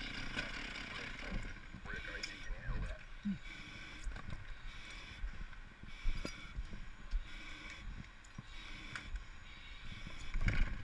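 Faint knocks, clicks and scrapes of a firefighter's gear as they move through a smoke-filled building, over a low steady hiss.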